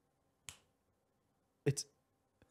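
A single short, sharp click about half a second in, then a brief spoken word near the end.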